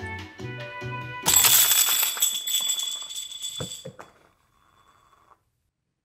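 Soft background music stops as a bright, ringing crash breaks in about a second in and dies away over two seconds or so, followed by two short knocks: the coloured circles of a mosaic falling off an easel board.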